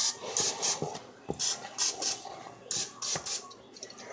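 Aerosol cooking spray hissing in a string of short squirts, about eight in four seconds, as it is sprayed onto a muffin pan to keep the muffins from sticking.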